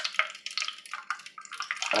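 A thin stream of water poured from a plastic water bottle into the top of an aluminium drink can, trickling and splashing unevenly.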